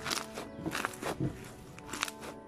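Purple slime squeezed and pressed between two hands, giving a run of short, wet squishing crackles and pops at an uneven pace, over background music.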